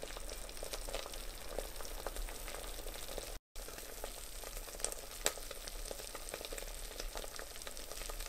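Barbecue sauce sizzling and bubbling around pork ribs in an Instant Pot Lux Mini's stainless steel inner pot on the sauté setting, with many small pops and spits: the sauce is reducing and caramelizing onto the ribs. A very short break in the sound about three and a half seconds in.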